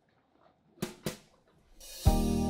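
Two short knocks close together about a second in, with near silence around them; music starts to fade in at the very end.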